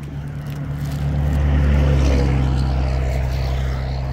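A motor vehicle passing on the road: a low engine hum with tyre and road rush swells to its loudest about two seconds in and then eases off, its pitch dropping slightly as it goes by.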